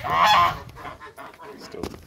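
Domestic goose giving one loud honk, about half a second long, right at the start.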